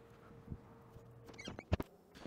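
Faint simmering of a saucepan of pearl couscous at a boil, under a thin steady hum. It ends with a few sharp clicks near the end.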